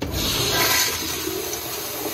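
A wall-hung commercial toilet flushing through its flushometer valve: a loud rush of water bursts in all at once, peaks about half a second in, then settles into a steady rushing flow.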